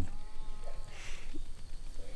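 A faint, drawn-out animal call in the first second, over a steady low rumble.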